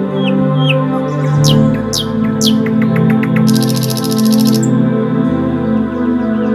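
Calm ambient music with long held notes, overlaid with bird calls. There are two short down-slurred whistles, then three sharp falling whistles and a quick run of chirps. About halfway through comes a fast, high-pitched trill lasting about a second.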